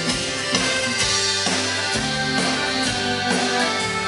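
Live folk-rock band playing an instrumental passage: accordion holding chords over a strummed acoustic guitar, with a steady beat.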